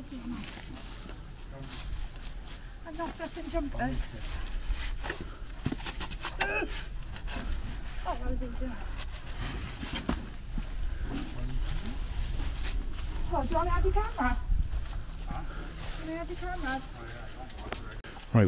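Quiet, indistinct voices talking at a distance, with scattered knocks and rustles and a steady low rumble of wind on the microphone.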